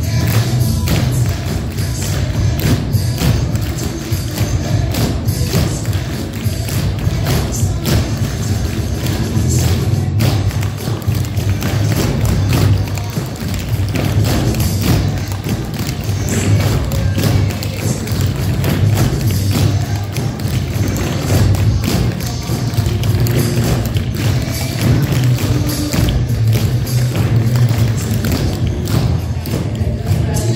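Many pairs of tap shoes striking a wooden floor as a class dances together, the taps running densely over recorded music with a steady bass beat.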